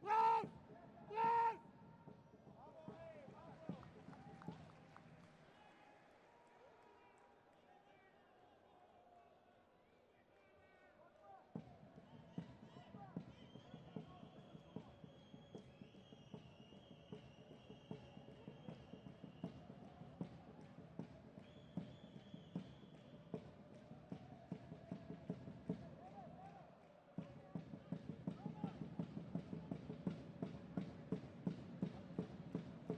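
Faint pitch-side sound of a football match in a sparse stadium: two loud shouts right at the start, scattered calls from players, and from about a third of the way in a steady run of sharp knocks, several a second, that keeps going to the end.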